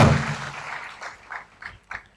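A pause in a man's amplified speech. The tail of his voice fades away in the hall over about a second, then come a few faint, short sounds and room noise.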